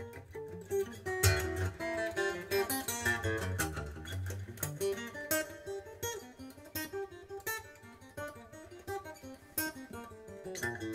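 Solo acoustic guitar played fingerstyle: a quick run of plucked notes with sharp string attacks and bass notes underneath, louder in the first half and softer toward the end.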